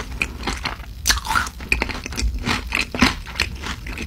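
Close-miked chewing of spicy glazed fried chicken: an irregular run of crunches and wet mouth clicks.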